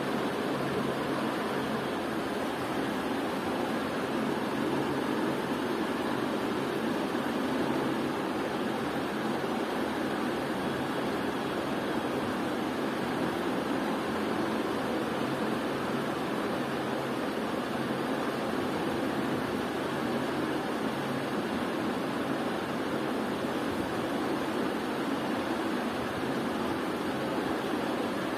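Steady even hiss with a faint low hum underneath, with no distinct events.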